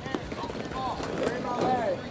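Voices of people on a softball field calling out, unclear and not close, with a few short clicks mixed in.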